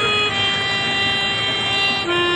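Music: an electronic keyboard holding a sustained chord, moving to a new chord shortly after the start and then held steady.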